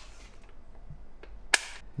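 A single sharp metallic click about one and a half seconds in, with a couple of faint ticks before it, from a torque wrench being handled and set.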